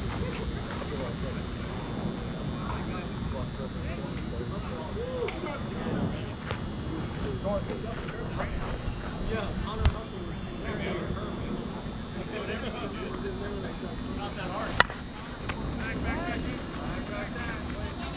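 Scattered, faint players' voices and calls across the field, with a dull thump about ten seconds in and one sharp crack about fifteen seconds in as a softball bat hits the ball.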